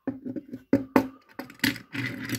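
Metal die-cast toy car being handled, turned over and set down on a wooden tabletop: several sharp clicks and taps, the loudest about a second in.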